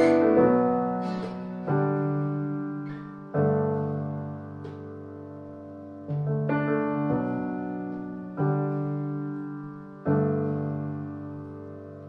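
Piano playing slow, sustained chords: a new chord is struck roughly every one and a half to two seconds and left to ring and fade before the next.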